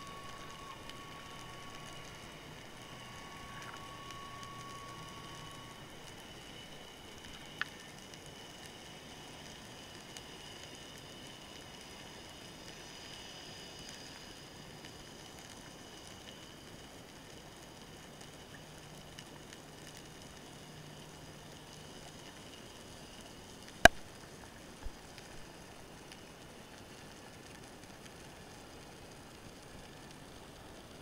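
Underwater ambience picked up through a camera housing: a steady faint hiss with thin, faint whining tones. There is a small sharp click about 7 s in and a single loud, sharp click a few seconds before the end.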